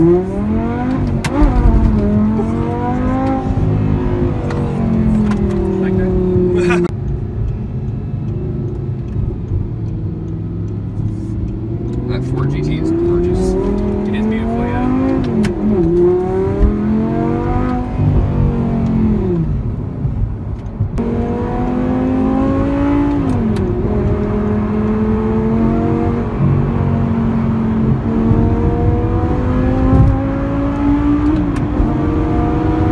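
Audi R8's V10 engine heard from inside the cabin, accelerating through the gears: the revs climb and then fall back sharply at each upshift, several times over, with a steadier stretch of cruising in the middle.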